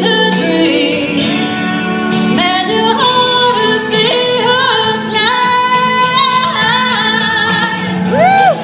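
A woman singing a ballad live into a microphone over instrumental accompaniment, with long held notes.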